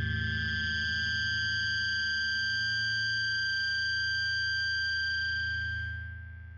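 Electric guitar feedback: a steady high-pitched tone held over a low droning note, dying away near the end.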